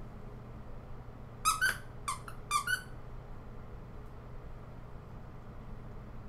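A quick run of short, high-pitched squeaks in three pairs, starting about a second and a half in.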